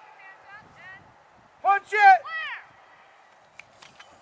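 A voice shouting, loudest about two seconds in and ending on a long falling call, with faint speech just before it and a few light clicks near the end.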